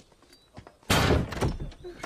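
A door slamming: one sudden loud bang about a second in that rings out briefly.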